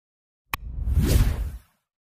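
Sound effects for an animated subscribe button: a single click about half a second in, then a whoosh that swells and fades within about a second.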